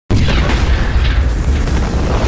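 Sound-effect explosion: a sudden boom that rolls on as a loud, deep rumble.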